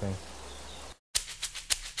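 Background music starts after a brief break: a quick run of sharp shaker-like ticks over a low steady hum, used as a transition sting. Before the break, the first second holds only a faint steady hiss.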